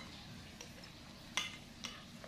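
Metal spoons and forks clinking against a glass bowl as instant noodles are stirred and lifted: a few sharp clinks, the loudest about one and a half seconds in.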